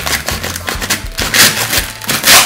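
A chef's knife sawing down through an instant soup cup: a run of scratchy, rasping cutting strokes, the loudest about one and a half seconds in.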